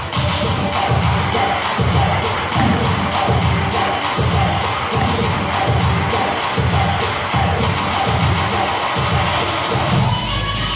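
Loud dance music with a steady, driving beat, with a crowd cheering over it.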